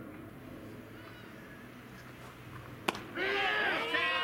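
A single sharp crack of a baseball bat hitting the ball about three seconds in, followed at once by several players shouting.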